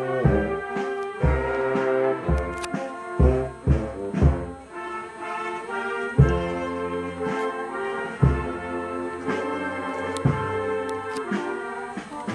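An Italian town wind band (banda musicale) playing a march as it walks in procession. Trombones and trumpets carry the tune over a low drum beat of about two strokes a second.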